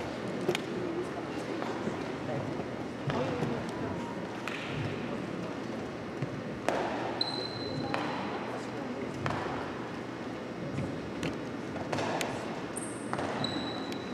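Several basketballs dribbled on a hardwood gym floor, scattered bounces at irregular intervals, in a large reverberant gymnasium. Two brief high squeaks cut in around the middle and near the end.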